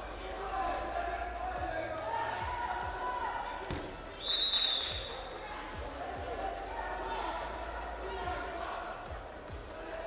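Wrestling-hall sound: shouting voices from coaches and spectators, scattered thuds of bodies on the mat, and a single short referee's whistle blast about four seconds in, the loudest sound.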